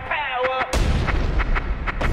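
A short wavering, gliding pitched tone, then about three-quarters of a second in a sudden loud blast with a rumbling low end, like an explosion or gunfire sound effect, with music's drum hits going on around it.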